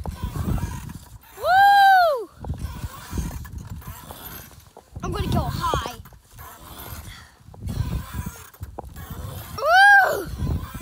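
A swing in motion: wind rumbling on the handheld phone's microphone in gusts as it swings, with long, high squeals that rise and fall in pitch, loudest about a second and a half in and again at the very end.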